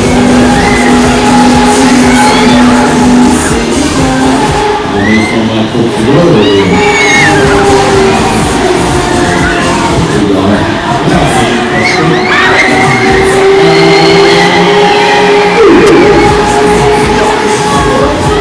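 Loud fairground ride music: a song with vocals playing over the Break Dancer ride's sound system. Riders' whoops and shouts rise over it now and then.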